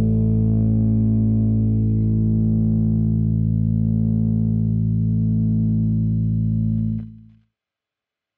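Electric bass guitar letting a final open-string note ring out steadily, then stopping abruptly about seven seconds in.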